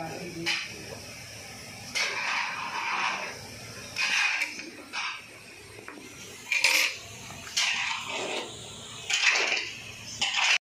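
Hand milking a cow into a steel bucket: milk squirts hiss into the frothy milk already in the pail in short spurts, about one a second.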